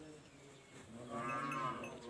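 A livestock animal calls once, a wavering pitched call lasting under a second, starting about a second in.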